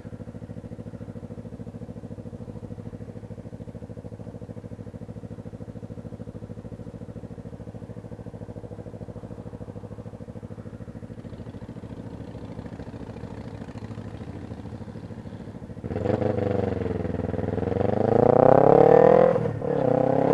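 Kawasaki Ninja 250R parallel-twin engine idling steadily while the bike is stopped. About four seconds from the end it revs up as the bike pulls away, rising in pitch and getting louder, with a brief dip just before the end.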